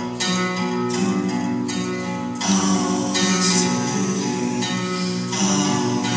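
Guitar music: chords strummed over sustained ringing notes, with harder strums about two and a half seconds in and again near the end.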